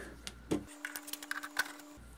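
Screwdriver working a screw out of the oscilloscope's rear cover panel: a few faint, irregular clicks and scrapes.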